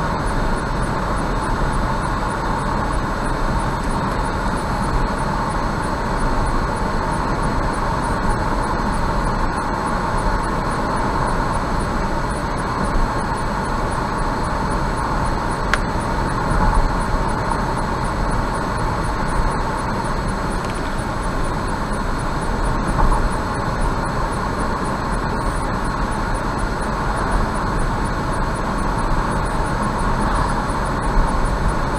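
Steady road and tyre noise with engine hum from a car cruising at about 73 km/h, heard from inside the car.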